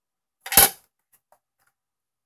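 A single sharp plastic snap as the clear hinged lid of a Viatek RE02 battery charger is shut, followed by a couple of faint ticks.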